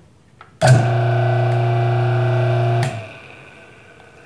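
One-horsepower single-phase dual-capacitor induction motor switched on under a second in, running with a loud, steady electrical hum for about two seconds, then switched off and left spinning down quietly.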